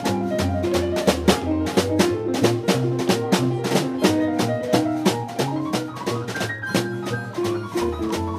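Instrumental jazz from a small live combo: a digital stage piano playing chords and runs over low bass notes, with drums struck with sticks keeping a steady, busy beat.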